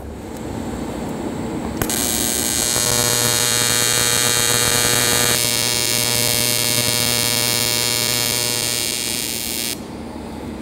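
AC TIG welding arc on aluminum at about 140 amps, a steady electric buzz. It strikes about two seconds in and cuts off just before the end as the arc is broken.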